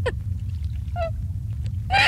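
A person's short, pitched gasping sobs, one right at the start and another about a second in, over a low steady rumble. A louder wailing voice comes in at the very end.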